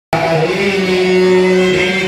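Devotional chanting with long, steady held notes.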